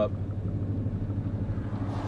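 Steady low engine and road drone heard from inside a vehicle's cab while it is being driven.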